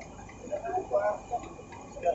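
Indistinct voices talking, with light ticking clicks over a faint steady background.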